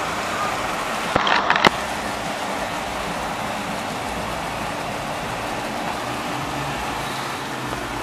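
Steady rushing noise of an automatic car wash running, its water spray mixed with road traffic. A brief cluster of sharp clicks comes about a second in.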